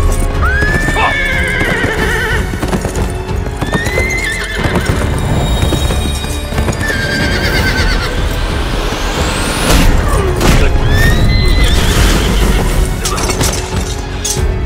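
Horses whinnying several times, with hoofbeats, over background music.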